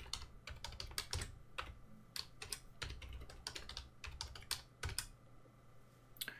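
Computer keyboard typing: quiet key clicks in irregular runs with short pauses, as a password is typed in twice.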